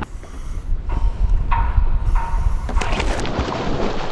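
Wind rumbling on the microphone aboard a small dive boat, with a few short steady tones in the middle. Near the end it gives way to a dense rush of water as a scuba diver goes over the side and under.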